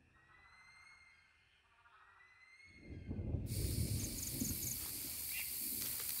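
A faint held film-score tone fades out. About three seconds in, night rainforest ambience starts suddenly: a dense high hiss of insects with short repeating high chirps over low rustling and rumbling.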